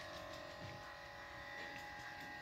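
A steady faint hum of several fixed tones, unchanging throughout.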